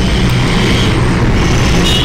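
Steady low hum with a noisy hiss, running on unchanged beneath the pause in speech.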